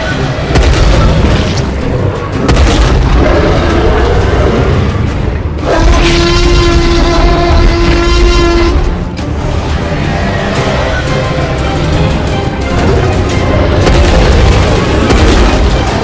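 Loud dramatic film-score music under heavy, deep booming effects, with a held pitched note from about six to nine seconds in.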